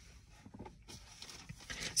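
Quiet background inside a vehicle's cabin: a faint even hiss with a few soft clicks, growing a little louder near the end.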